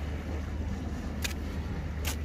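A steady low rumble with a faint hiss over it, and one brief click a little over a second in.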